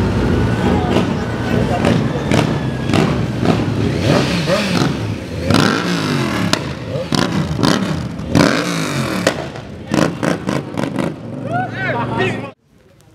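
Motorcycle engines revving repeatedly, their pitch rising and falling, with people's voices shouting and talking over them.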